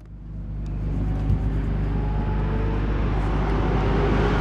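Sports car engine running at a low steady note, fading in from silence over the first second.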